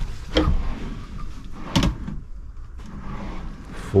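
A small cabinet drawer beside an RV bed being pulled open by hand, with two short knocks about a second and a half apart, over a low steady background rumble.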